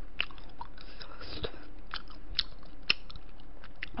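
Close-miked eating sounds: a person chewing and biting food, with irregular small wet clicks and crunches, the sharpest about three seconds in.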